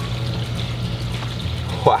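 Steady low hum with an even haze of running water from the fish pond, under faint background music.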